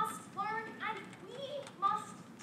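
Speech only: a teenage girl's voice delivering a prepared oration.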